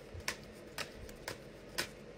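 A tarot deck being shuffled by hand: a soft rustle of cards with four short clicks about half a second apart.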